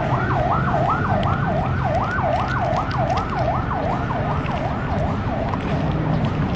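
Emergency vehicle siren in fast yelp mode: a rapid up-and-down wail, about four sweeps a second, fading near the end.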